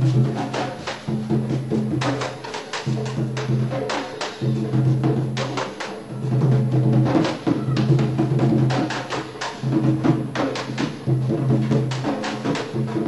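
Instrumental passage of a candombe song: candombe drums struck with hand and stick in a dense rhythm of sharp strokes, over held low notes that change about once a second.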